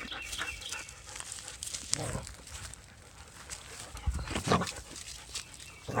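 A dog making short sounds, with louder ones about two seconds and four and a half seconds in.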